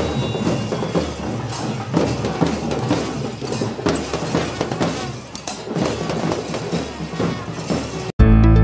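Drums beaten with sticks in a street procession, a busy, irregular run of strikes over crowd noise.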